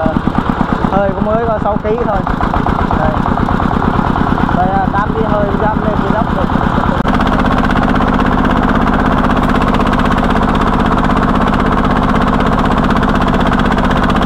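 Single-cylinder diesel engine of a công nông farm cart running under load with rapid, even firing pulses as it hauls a cartload of firewood along a dirt track. Its note settles into a steadier drone about halfway through.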